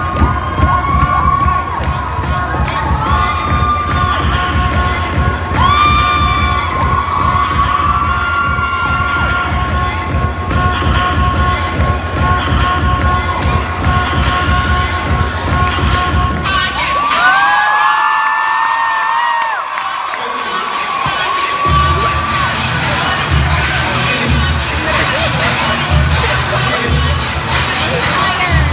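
A crowd of students in a gymnasium cheering and screaming, with high whoops over music with a heavy thumping beat. About 17 seconds in, the beat drops out for a few seconds under one long, rising scream, then comes back.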